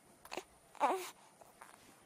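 Baby-like crying: a faint short whimper, then about a second in a louder wailing cry that falls in pitch.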